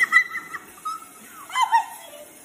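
A woman's high-pitched squeals: a few short cries at the start and again about one and a half seconds in.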